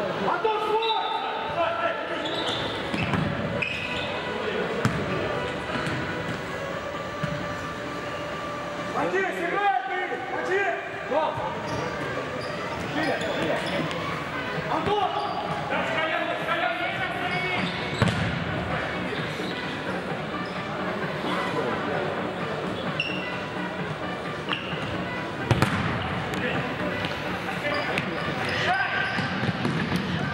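Futsal ball being kicked and bouncing on a sports hall's parquet floor, with two sharp kicks standing out about 18 and 25 seconds in, amid voices in the hall.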